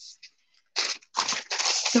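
A sheet of thin deli paper rustling and crackling as it is picked up and handled, in a few bursts starting a little under a second in.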